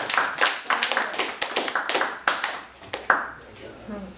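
A small group clapping, the applause thinning out and fading toward the end.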